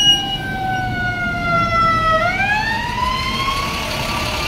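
Emergency vehicle siren wailing, heard from inside a car: a slow falling tone that turns about halfway through and rises again. A low road and engine rumble runs underneath.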